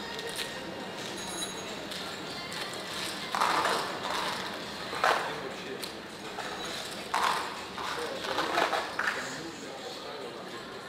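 Casino roulette-table ambience: indistinct voices in several short bursts over a steady background hum, with faint background music and a brief high electronic chime about a second in.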